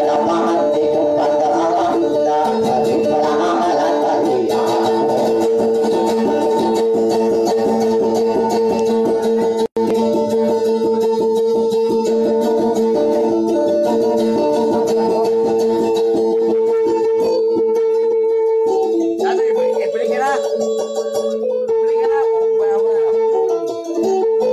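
Dayunday music: a plucked string instrument playing a fast, repetitive accompaniment around a steady pitch, with one very brief dropout near the middle.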